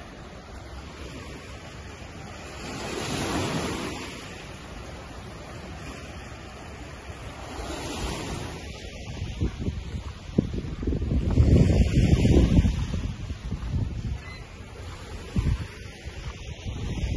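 Small lake waves washing against a rocky shore, swelling and easing, with wind buffeting the microphone in gusts that are loudest about ten to thirteen seconds in.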